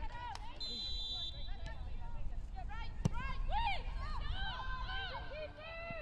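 Footballers' shouts and calls across the pitch during play, indistinct, over a low rumble. A short high steady tone comes about a second in and a single sharp knock about three seconds in.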